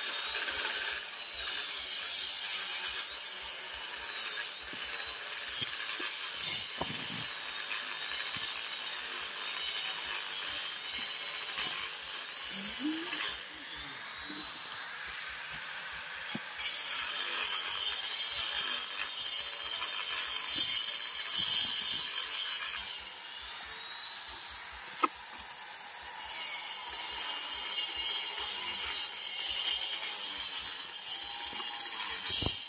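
Handheld electric angle grinder working on large ceramic floor tiles. Its whine rises as it spins up, about halfway through and again some ten seconds later, then holds steady over a hissing cut.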